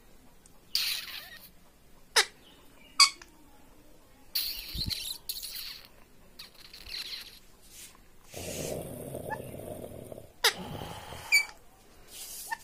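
Indian ringneck parakeet giving short, sharp squeaky calls, the loudest about two and three seconds in and two more near the end, between soft hissy chatter. About eight seconds in there is a stretch of rougher, lower noise lasting about two seconds.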